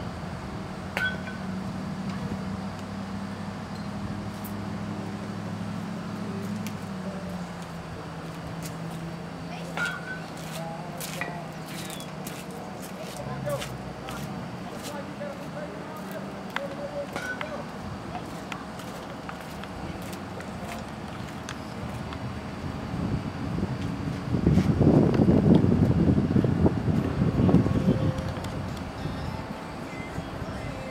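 Outdoor ambience with distant, indistinct voices over a steady low hum, broken by a few sharp clicks, with a louder rush of noise near the end.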